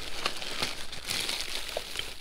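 Thin plastic garbage bag crinkling and rustling as gloved hands grip it and pull it open, an irregular crackle with small ticks.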